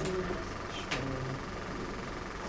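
Marker pen writing on a whiteboard: faint scratching strokes, with a short sharp tap about a second in.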